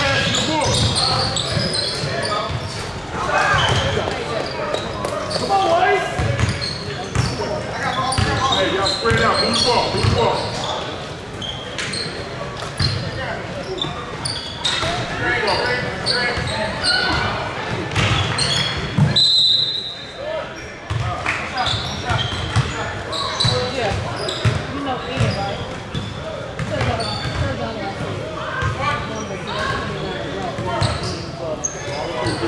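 Basketball bouncing on a hardwood gym floor during play, with voices of players and spectators echoing through a large hall. A short, high whistle blast sounds about 19 seconds in.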